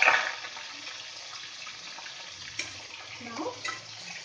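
Raw chicken pieces frying in hot oil in a kadai: a steady sizzling hiss. There is a short sharp knock at the very start.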